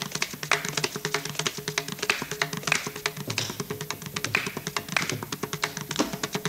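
Mridangam played in a fast, dense run of strokes, its tuned head ringing at a steady pitch beneath the strokes.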